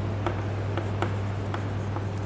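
Chalk writing on a chalkboard: light scratching with a series of small taps as the letters are formed, over a steady low hum.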